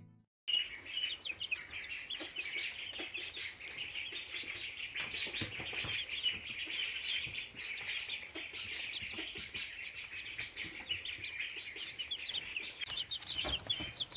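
A brood of young chicks peeping continuously, with many high chirps overlapping. It starts about half a second in, after a short silence.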